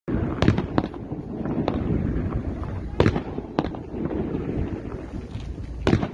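Fireworks going off: about six sharp bangs at uneven intervals, the loudest near the start, about three seconds in and just before the end, over a continuous low rumble.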